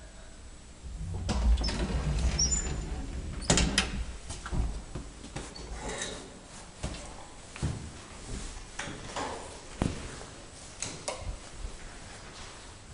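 Elevator doors being worked at a floor stop: a low rumble about a second in, a sharp knock at about three and a half seconds, then a string of lighter knocks and clicks.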